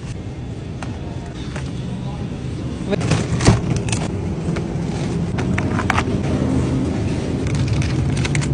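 Supermarket aisle background: a steady low rumble that grows louder after about three seconds, with a few sharp clicks and taps from packages being handled on the shelves around three to four seconds in.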